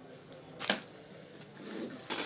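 A single short plastic click about two-thirds of a second in, from a plastic part being handled on a workbench, over faint room tone.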